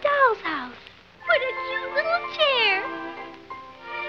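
Soft background music under a few short, meow-like animal cries that swoop up and down in pitch. One falling cry comes at the start, then after a brief lull a quick cluster of cries ends in a long falling one before the music carries on alone.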